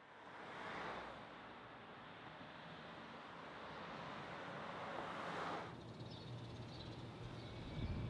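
Street traffic: cars driving past, the tyre and engine noise swelling as one vehicle passes about a second in and another just after the middle, before it drops away suddenly. A low rumble of traffic builds near the end.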